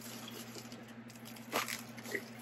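Plastic bubble wrap crinkling and rustling as it is handled and pulled open, with a louder burst of crackling about one and a half seconds in.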